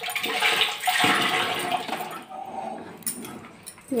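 Thick, wet rice batter being spooned and scraped off a ladle into a leaf-lined pressure cooker pot: a wet, sloshing scrape, loudest in the first two seconds, then quieter with a few light clicks near the end.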